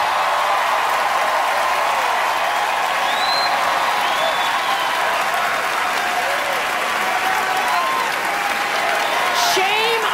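Theatre audience applauding steadily for several seconds, with scattered cheers and whoops over the clapping.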